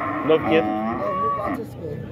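Cattle mooing: a drawn-out, pitched call, with people's voices in the background.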